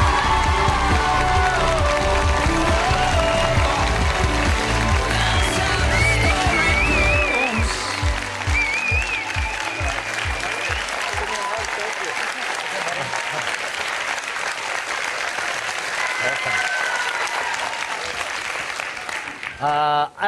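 Studio audience applauding a guest's entrance over bass-heavy walk-on music. The music fades out between about eight and eleven seconds in, and the applause carries on alone until near the end.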